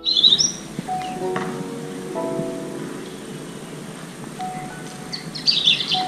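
Calm, slow keyboard music with songbirds chirping over it: a loud burst of chirps right at the start and a run of chirps near the end.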